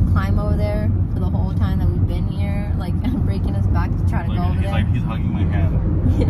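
Steady low rumble of a van's engine and road noise heard from inside the moving cabin.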